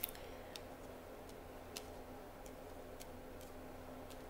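Faint, irregularly spaced light clicks of tarot cards being touched and moved on a wooden table, over a low steady hum.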